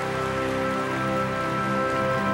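Audience applause over an orchestra's held closing chord.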